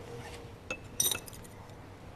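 Light clinks of chopsticks and a spoon against porcelain rice bowls and plates at a dinner table: a small tap about two-thirds of a second in, then a brighter cluster of clinks about a second in.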